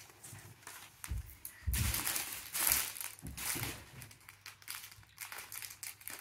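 Sheets of paper rustling and crinkling in several short bursts as they are handled, with a few soft low bumps.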